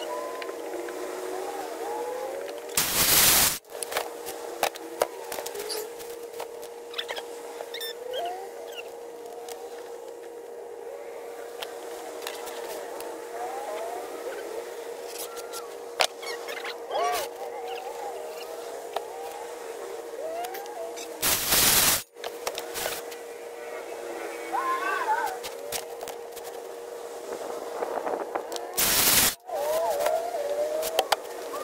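Three short bursts of a DeWalt 20V cordless circular saw cutting plywood: one about three seconds in, one about twenty-one seconds in, and one near the end. Between the cuts there are high-pitched, chattering voices over a steady thin tone.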